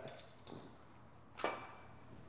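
Light metallic clinks from a weighted drag sled and its strap hardware as the sled is pulled back over turf. There is a faint tick about half a second in and a sharper clink a little before the end.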